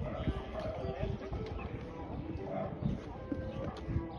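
Hoofbeats of a show-jumping horse cantering on sand arena footing: irregular dull thuds, with indistinct voices in the background.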